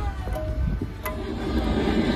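Small joy-ride train running: a steady low rumble from the carriage, with music playing over it and a single sharp click about a second in.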